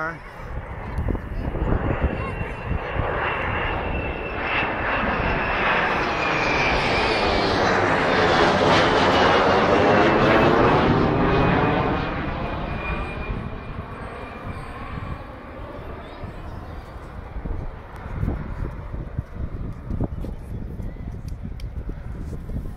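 Two F/A-18 Hornet fighter jets flying past. The jet engine noise builds to a loud rushing roar about eight to eleven seconds in, with a high turbine whine that drifts slightly down in pitch and a sweeping, phasing sound as they pass. It then fades away.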